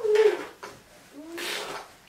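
Infant vocalizing: a short falling coo at the start, then a rising coo followed by a breathy, noisy burst about a second and a half in.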